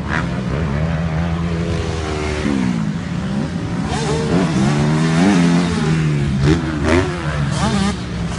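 Motocross bike engines revving hard and falling away as the throttle is opened and closed around the track, the pitch climbing, dropping and climbing again several times.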